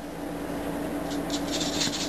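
Paintbrush rubbing in burnt umber paint on a foam plate: a run of soft, short scratchy strokes starting about a second in.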